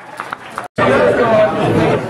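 Bar crowd chatter, several voices talking, between songs at a live acoustic set. The sound drops out completely for a moment just before a second in, then the talking comes back louder.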